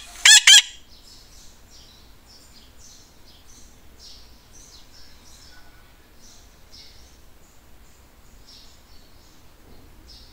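Two short, loud, high-pitched bird calls in quick succession near the start, followed by faint, scattered bird chirping.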